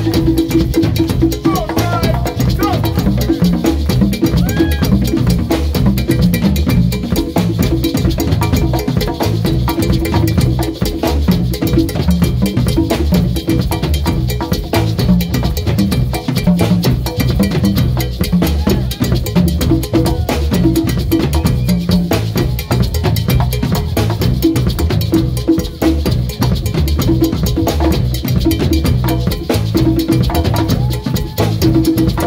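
A live Latin rock band in a percussion-heavy passage: congas and a drum kit play a dense, driving rhythm over a steady held low note.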